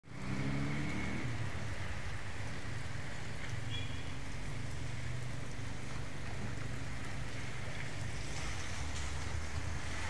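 Steady outdoor hiss of wet snow falling on a wet street, with a low vehicle engine hum underneath that rises slightly in pitch during the first second.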